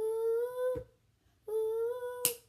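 A girl singing long, steady 'ooh' notes with no accompaniment: one note to just under a second in, ended by a sharp click, and a second note starting about a second and a half in.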